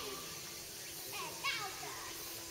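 Distant voices, with short rising and falling calls about a second in, over a faint steady hum.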